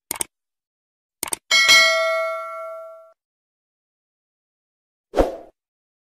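Subscribe-button sound effects: a quick double click, then two more clicks and a bright bell ding that rings on for about a second and a half before dying away. A short thump comes near the end.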